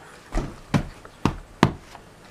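Four short knocks, about half a second apart.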